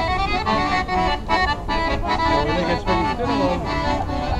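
Accordion music for a line dance, a lively tune that keeps moving from note to note without a break.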